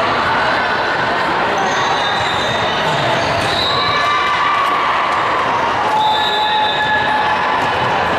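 Echoing gymnasium din during a volleyball match: a steady mix of voices from players and spectators, volleyballs bouncing and being struck, and scattered squeaks of sneakers on the hardwood floor.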